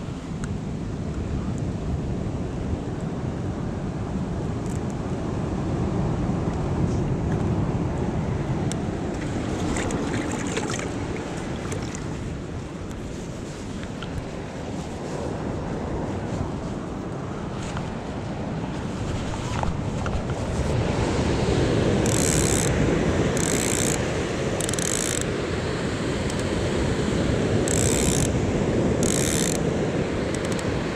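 Surf breaking on a sandy, rocky shore, a steady rush that swells and eases, with wind on the microphone. Five short high hissing bursts come in the last eight seconds.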